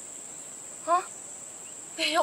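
Steady, high-pitched insect drone holding one even pitch, the sound of a chorus of insects in the surrounding vegetation.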